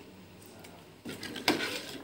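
Quiet room tone, then a few light clicks and knocks of kitchenware against a cooking pot about a second in and again halfway through the second second.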